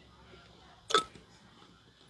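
A man drinking from a water bottle close to the microphone, with one short, sharp throat sound about a second in as he finishes the drink.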